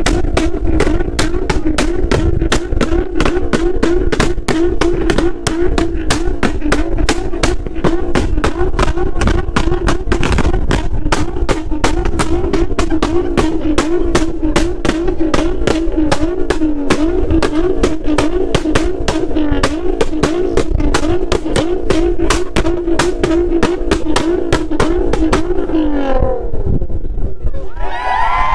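Nissan GT-R's twin-turbo V6 held at high revs against the rev limiter: a steady high engine note broken by sharp cracks about four times a second. Right at the end the throttle is released and the revs fall away.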